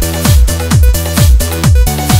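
Electronic house/techno dance track: a kick drum on every beat, about two a second, over a steady bass and held synth chords.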